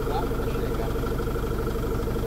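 A truck's diesel engine idling steadily, heard from inside the cab.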